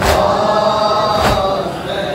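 A crowd of Shia mourners chanting a Muharram lament together, cut by loud, regular slaps of chest-beating (matam) about every second and a quarter: one at the start and another just past a second in.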